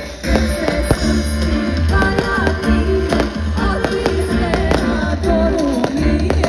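Live band music played loud over a concert PA system, with heavy steady bass.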